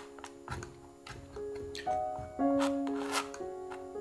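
Background music with held notes, over several short scrapes and taps of a steel palette knife spreading thick white acrylic paint on a stretched canvas, the longest scrape about three seconds in.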